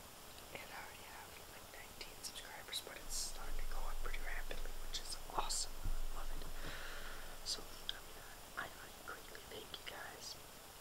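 A person talking in a whisper, breathy syllables with sharp hissing s-sounds.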